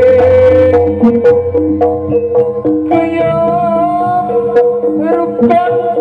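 Live jaranan gamelan music: a high, wavering melody held in long notes, rising to a higher pitch about halfway through, over irregular sharp drum and percussion strokes.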